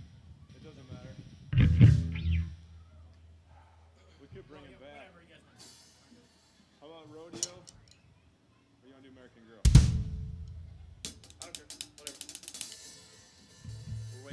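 Band noodling between songs: two loud drum-kit hits, each followed by a low bass note ringing for a second or two, with faint talk between them. Near the end comes a run of quick hi-hat and cymbal taps.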